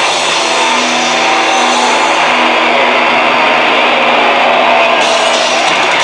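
Death metal band playing live on stage: loud, dense distorted electric guitars and bass with drums.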